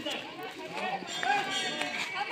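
Several people's voices talking at once in the background, unintelligible crowd chatter.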